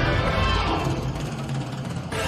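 Music playing, growing quieter through the second half.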